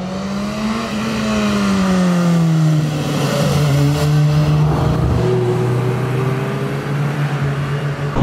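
BMW S1000R inline-four sport motorcycle riding past: its engine note rises, falls as the bike goes by about three seconds in, then holds a steady pitch.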